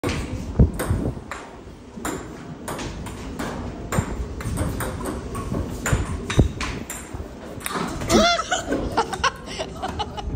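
Table tennis rally: the hollow plastic ball clicking off rubber paddles and the table top in an irregular run of sharp ticks.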